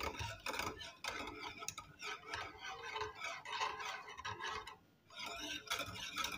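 Wire whisk stirring a liquid milk-and-agar pudding mixture in a metal pot, the wires swishing and scraping against the pot. The stirring breaks off briefly a little before five seconds in.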